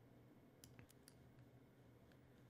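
Near silence: room tone with a few faint clicks, bunched just after half a second in, as a computer is worked while editing.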